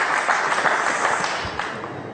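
Studio audience applauding, a dense patter of many hands clapping that dies away near the end.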